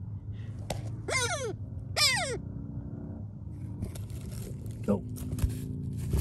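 A trained bird of prey calling twice from inside a coyote burrow, each call a short cry falling steeply in pitch, about a second apart. The calls are the sign that the bird is alive down the hole with its rabbit.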